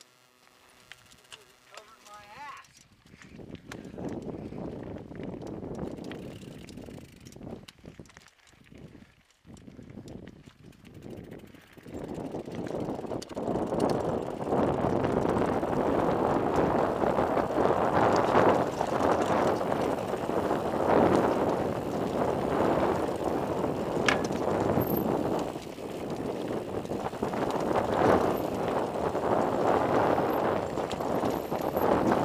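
Bicycle descending a rocky dirt trail: continuous rough crunching and rattling of tyres over gravel and stones, full of small irregular knocks. It grows louder and denser about twelve seconds in.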